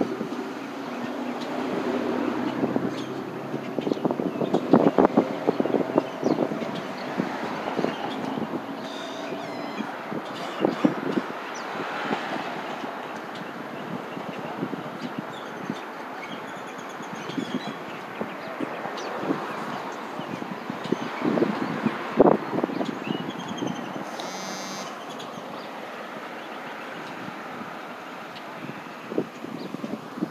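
Street traffic noise with scattered knocks and rustles, clustered about four to six seconds in and again around twenty-two seconds.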